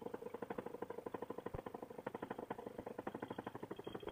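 Fresh Breeze Monster paramotor engine, a single-cylinder two-stroke, running at low throttle on the ground with an even pulse of about a dozen beats a second.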